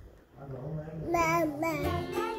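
A children's song: a high, child-like voice singing a melody over a simple backing with low bass notes, coming in about a second in after a brief near-quiet start.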